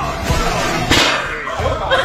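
A sudden sharp crack, like a whip or slap, about a second in, over music and voices. A woman's startled scream begins near the end.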